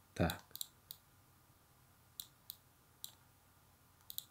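Short, sharp computer-mouse clicks, about four in the first second and three more a second later, as shapes are drawn with a whiteboard ellipse tool. A brief low voice sound comes just at the start.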